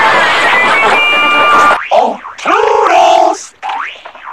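Heavily effect-processed, pitch-shifted cartoon soundtrack. Dense music with held tones runs for about the first two seconds, then cuts off sharply. Short cartoon sound effects with sliding, bending pitch follow.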